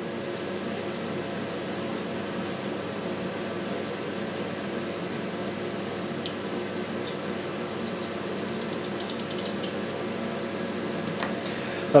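A steady mechanical hum, like a fan motor, with a few faint light clicks near the middle and later part.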